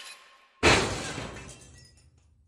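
Glass-shattering sound effect for a logo reveal. The tail of one crash fades out, then a second sharp crash comes about half a second in and dies away over about a second and a half.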